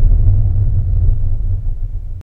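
Deep, loud rumble of a title-sequence sound effect, a low bass drone that slowly fades toward the end.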